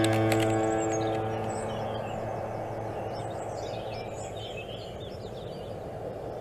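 A low, steady-pitched tone that comes in suddenly with a few clicks and fades over about a second and a half, over a steady outdoor hiss with birds chirping faintly.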